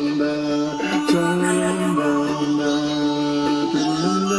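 Toy plastic ukulele strummed while a man sings a wordless melody in long held notes that step from pitch to pitch.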